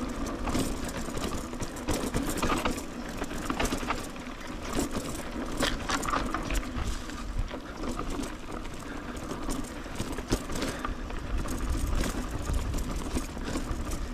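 Mountain bike rolling downhill over a rough, dry dirt trail: tyres crunching on loose soil and the bike rattling, with many short clicks and knocks from the bumps over a steady rumble.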